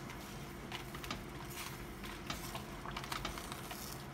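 Wooden cooking chopsticks pushing cabbage leaves down into a stainless-steel pot of boiling salted water, making faint scattered clicks and soft rustles over a low steady hum.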